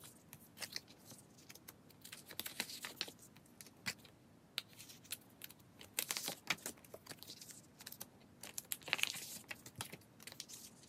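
Photocards slid into clear plastic binder-sleeve pockets: faint crinkling of the plastic with light clicks and taps, coming on and off.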